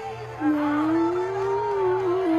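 A worship song plays, with a voice holding one long, slightly rising note that starts about half a second in.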